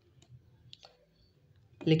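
A few faint, short clicks in a quiet pause, then a man's voice starts speaking near the end.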